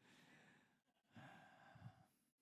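Near silence with a man's faint breathing: two soft breaths or sighs, one at the start and one just past the middle.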